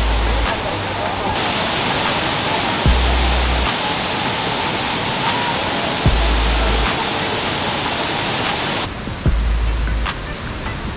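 Background music with a deep bass note about every three seconds, over the steady rush of cascading water.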